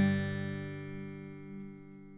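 A strummed acoustic guitar chord ringing out and slowly fading away: the song's final chord.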